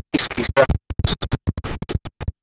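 A pen scratching over a writing surface in a rapid, irregular run of short strokes as words are handwritten.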